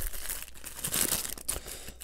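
Paper fast-food sandwich wrapper crinkling and crackling irregularly as it is unfolded by hand to get the sandwich out.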